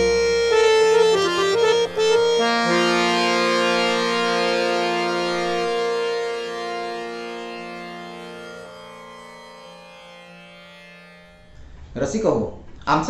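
Samvadini (harmonium) playing a short stepping phrase, then holding a chord of several notes that slowly fades away as the piece's final notes. One of the notes stops a little before the rest.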